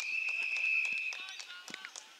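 Umpire's whistle blown once, a steady high note held for about a second and a half, followed by a few short knocks.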